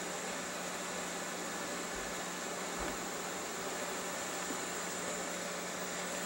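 Steady hiss with a faint steady low hum: room tone and recording noise, with two faint low bumps about two and three seconds in.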